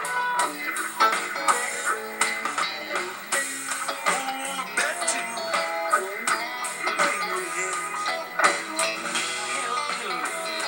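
Rock band playing an instrumental stretch of the song, led by electric guitars, with no singing. Heard from a television's speaker, so it sounds thin, with no deep bass.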